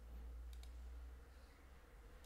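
A couple of faint computer mouse clicks over a steady low hum of room tone, as an item is picked from a dropdown list.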